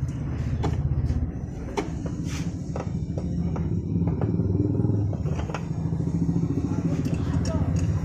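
Several sharp metal clinks as a scooter's rear wheel is handled and fitted back onto its hub, over a steady low rumble and indistinct voices.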